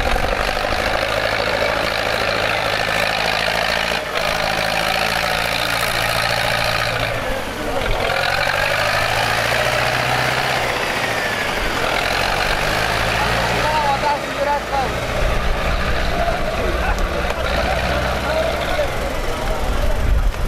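Tractor diesel engine idling steadily close by, under a continuous din of crowd voices.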